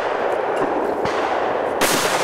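A single shotgun shot fired at a clay target near the end, over a steady hiss.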